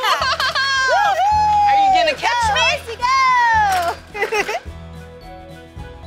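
Music with a voice singing long, sliding notes over a steady bass line. It drops quieter about four and a half seconds in.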